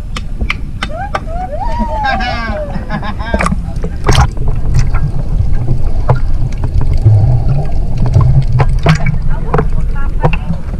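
Sea water sloshing and splashing around a camera held at the surface: a steady low rumble with many sharp knocks and splashes. Voices call out with rising and falling pitch in the first few seconds.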